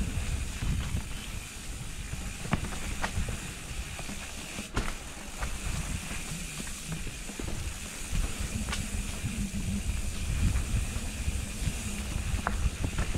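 Mountain bike rolling down a dirt singletrack: a continuous uneven rumble from the tyres and frame over the ground, with wind on the microphone and several sharp clacks as the bike rattles over bumps and roots.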